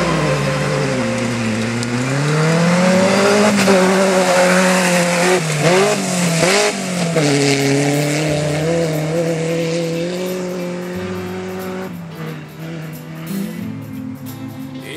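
Rally car engine pulling away hard from a standing start, its pitch dipping and climbing through the gears, with several quick rises and falls of revs in the middle before it settles to a steady note and fades as the car drives away.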